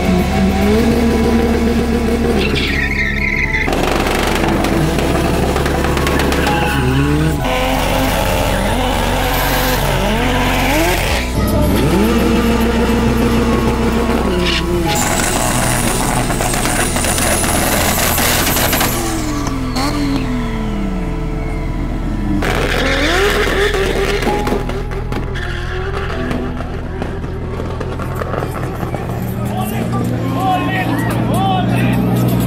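Drag race cars revving hard and launching with tyre squeal, over background music with a steady bass line. The engine runs climb and fall several times through the stretch.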